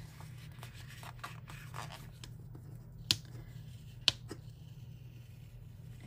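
Hands peeling and handling paper planner stickers, with faint rustling and two sharp clicks about a second apart midway through, over a steady low hum.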